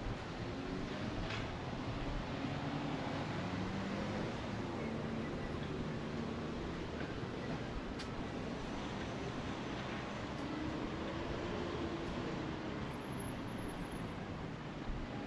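City street traffic: a steady hum of road noise with the low drone of vehicle engines passing and fading on the road.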